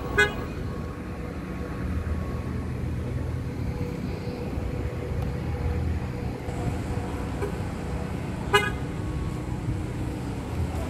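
Two short car horn toots, one right at the start and another about eight and a half seconds in, over the steady low rumble of cars driving past.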